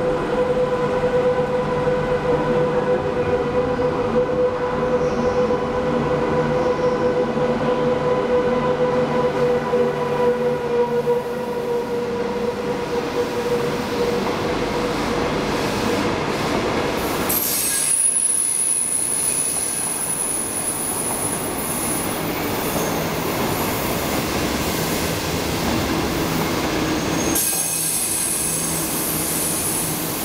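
Passenger train hauled by an SS8 electric locomotive running through the station, with a steady pitched hum through the first half. Its 25T coaches then roll past with high-pitched wheel squeal, once about halfway through and again near the end.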